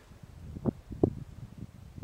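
Low wind rumble on the microphone, with two light knocks about a third of a second apart and a few fainter ticks, from handling of the held pistol.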